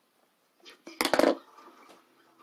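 Scissors set down on a tabletop: one short, sharp clatter about a second in.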